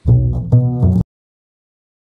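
Upright double bass plucked through three low notes, the opening of a song's bassline played as a guess-the-bassline quiz clip. It lasts about a second and cuts off suddenly.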